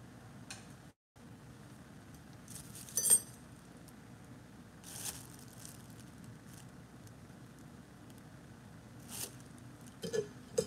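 Sporadic kitchen handling sounds: a few brief clinks and knocks, the loudest a ringing metal-or-glass clink about three seconds in, over low steady room noise. The sound cuts out completely for a moment about a second in.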